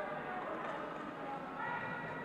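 Indistinct chatter of several voices echoing in a large sports hall, with one voice more prominent near the end.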